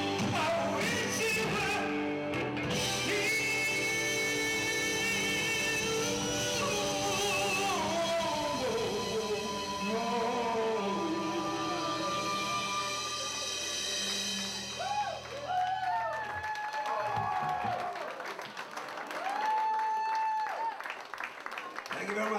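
Live rock band of electric guitar, bass guitar and drum kit playing. About two-thirds of the way through the full sound thins out, and near the end a lone electric guitar plays bent, held notes.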